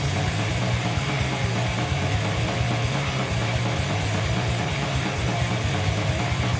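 Heavy metal band playing live: distorted electric guitars and drums in a dense, steady wall of sound without a break.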